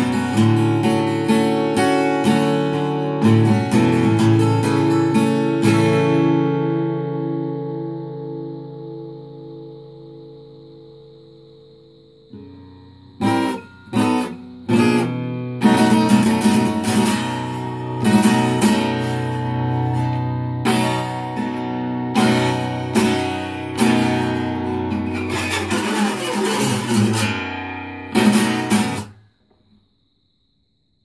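Acoustic guitar in DADGAD tuning being strummed. About six seconds in, a chord is left to ring and fade; strumming resumes after about seven seconds with hard strokes, then stops suddenly near the end.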